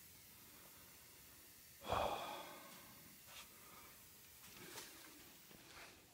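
Mostly quiet, with one short breath-like exhale about two seconds in that fades away, and a couple of faint handling noises after it.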